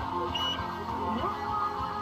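Music with several held, overlapping tones that step and glide in pitch, over a low rumble.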